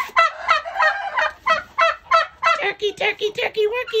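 Domestic turkeys calling in a quick run of short, repeated calls, about four a second, with lower, drawn-out notes near the end.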